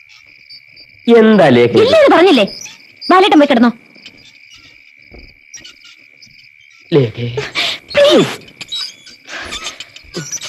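Steady high chirring of crickets as night-time background. Voices speak a few short phrases over it, loudest just after the first second and again around seven seconds in.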